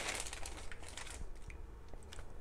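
Thin clear plastic bag crinkling as a pair of knit gloves is pulled out of it, dying down after about a second, followed by a few faint rustles.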